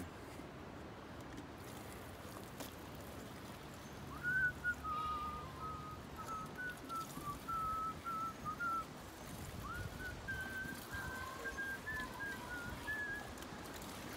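A man whistling a slow tune, starting about four seconds in and running until near the end, with a short pause in the middle. Before the tune there is only faint background noise.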